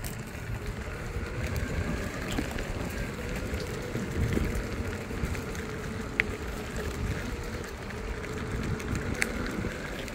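Electric skateboard on pneumatic off-road wheels rolling fast over a packed-dirt trail: a steady low rumble of tyres on dirt, with a few sharp clicks from bumps or small stones.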